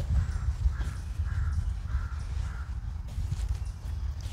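A crow cawing in the distance, about five caws in a steady run that stops a little past halfway, over a steady low rumble.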